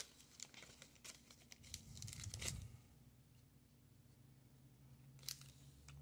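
Faint crinkling of a Pokémon booster pack's foil wrapper as the cards are slid out of it, dying away after about two and a half seconds, with one more short rustle near the end.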